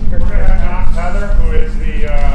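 People chatting among themselves, several voices overlapping without any one clear speaker, over a steady low rumble.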